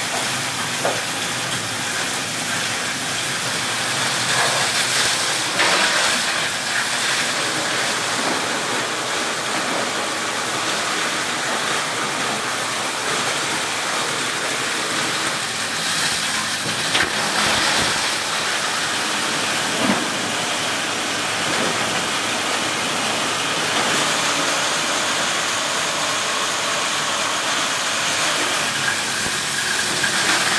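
Plastic crusher running steadily with a continuous loud rushing noise, with a few sharp knocks and clatters of hard plastic scrap.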